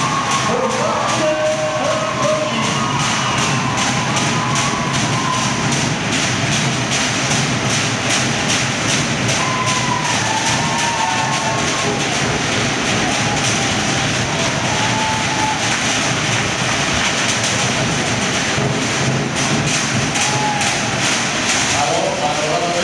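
Fast, even drumming, a rapid unbroken run of sharp beats, with a crowd cheering and calling over it.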